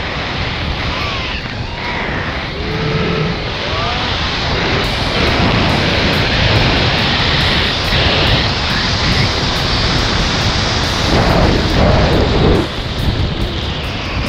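Loud wind rushing over the microphone as a tandem parachute canopy is flown through steep spiralling turns, building about five seconds in and dropping off sharply near the end as the turns stop.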